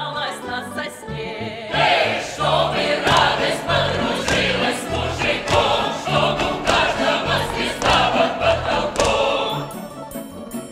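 Russian folk choir of mixed voices singing with a folk-instrument orchestra. A solo woman's voice with a strong vibrato opens, then the full choir comes in loudly about two seconds in.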